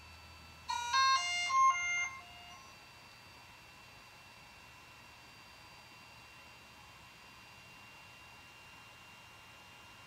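DJI Inspire 2 drone powering on: a short startup melody of electronic beeps stepping between several pitches, about a second in and lasting under two seconds. Faint steady high tones run under it.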